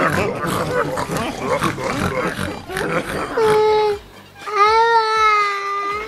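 A young boy crying loudly, with two long drawn-out wails, one just past the middle and one near the end, each held on a steady pitch. Jumbled voices come before them.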